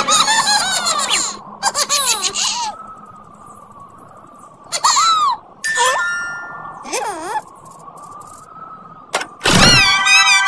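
Cartoon characters making wordless, swooping-pitch vocal sounds and giggles in several short bursts, over light background music.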